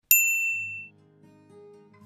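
A single bright bell-like 'ding' notification sound effect that fades out within about a second. Faint music starts underneath it.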